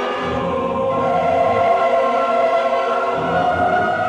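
Large mixed choir with symphony orchestra performing a choral oratorio, the choir holding sustained chords. The sound swells a little after about a second.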